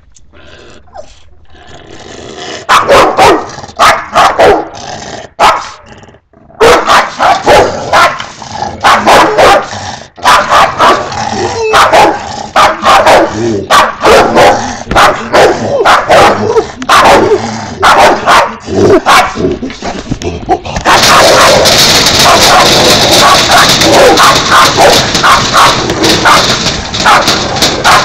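Dog barking at the enclosure screen in rapid, repeated barks, getting louder and nearly continuous for the last several seconds.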